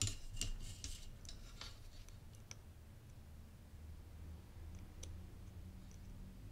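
Multimeter test probes being set against the terminals of a small circuit board: a few faint, scattered clicks and light scraping, over a low steady hum.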